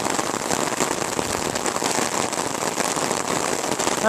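Steady rain falling, a dense, even patter of many small drops.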